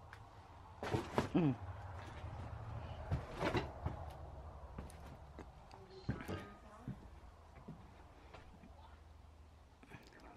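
Scattered knocks and bumps, the loudest in the first four seconds and a few fainter ones later, over a faint low rumble.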